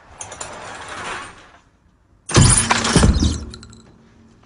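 Shower curtain hooks scraping along a metal rod as the curtain is pulled aside, twice: a softer pull lasting about a second and a half, then a louder, sharper one a little after two seconds in.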